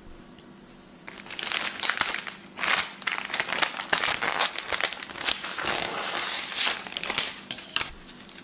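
Clear cellophane flower wrapping crinkling and rustling as it is cut open with scissors and pulled apart. It begins about a second in and stops just before the end.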